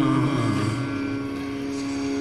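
A steady drone holding one note, the pitch accompaniment to Sanskrit/Malayalam scripture chanting, carrying on through a pause in the voice. The reciter's last note fades out in the first second.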